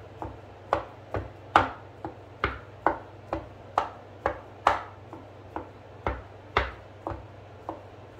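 Kitchen knife chopping imitation crab sticks on a wooden cutting board: sharp knocks about two a second, uneven in strength.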